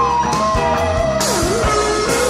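Rock band playing an instrumental passage: a lead electric guitar plays a melodic line that bends down in pitch and back up partway through, over drums and bass.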